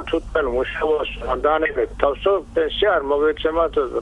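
A person speaking Georgian at a studio microphone, talking without pause.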